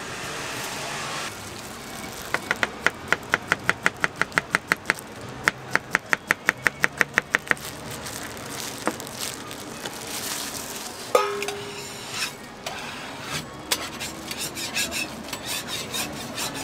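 Knife slicing a banana on a cutting board: quick, even cuts about five a second in two runs with a short break between. Later comes one sharp knock with a brief ring, followed by scattered light clicks.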